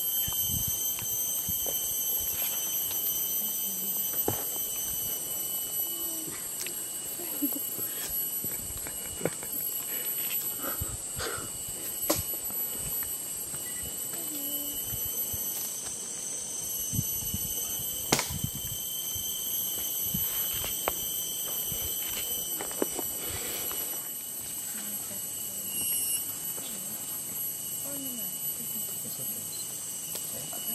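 Steady, high-pitched chorus of rainforest insects, several constant tones held without a break, with scattered sharp clicks and snaps.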